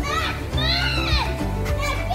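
Children playing and calling out, with several high-pitched shouts and cries, over music playing underneath.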